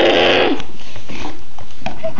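A person making a short, gruff, throaty growling noise, followed by a steady rough hiss.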